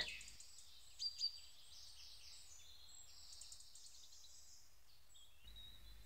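Faint high bird chirps over a quiet background hiss, with two slightly louder chirps about a second in.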